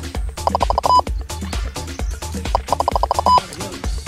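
Background music with a steady low beat, over which a laser speed gun's tracking tone sounds: two bursts of rapid beeping, each ending in a short steady beep, as the gun acquires the target's speed.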